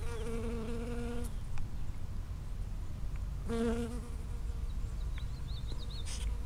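Honeybee buzzing in flight close to the microphone: one buzz of just over a second at the start and a shorter one about three and a half seconds in, its pitch wavering slightly.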